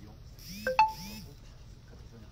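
A short electronic two-note chime, a low note then a higher one held briefly, sounding about half a second in.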